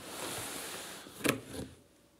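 A large cardboard box being slid and turned, a scraping rustle of cardboard for about a second, then a sharp knock and a smaller one as it is set in place.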